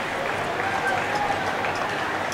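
Indistinct, distant voices chattering over a steady outdoor hiss, with no clear words.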